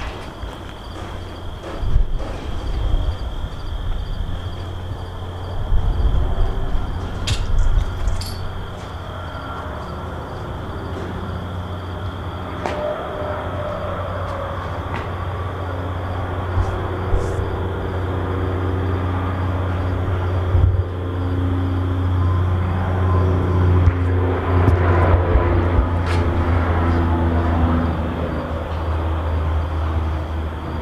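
Truck traffic on Interstate 40 heard from a short distance: a steady low rumble with drifting engine and tyre tones that swells toward the end. A few sharp clicks punctuate it.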